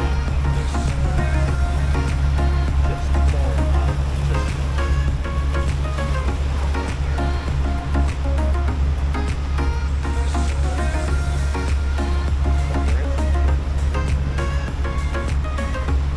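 Background music: short melodic notes over a steady low drone that runs throughout.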